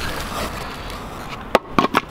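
Wooden shuttering board being pulled away from a cured concrete footing: a rough scraping rustle, then three sharp knocks close together near the end.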